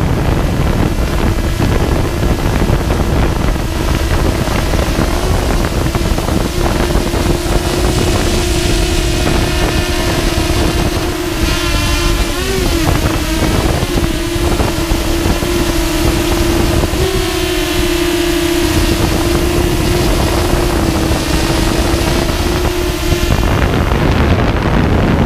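Storm 8 drone's electric motors and propellers running in flight: a steady hum with a brief wobble in pitch about halfway through and a slight shift later. Heavy wind buffeting on the onboard GoPro's microphone lies beneath it.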